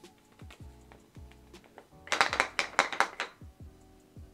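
Soft background music with a steady beat. About two seconds in comes a loud clatter of rapid clicks lasting just over a second, from a hollow nesting doll with smaller pieces inside being handled as someone tries to open it.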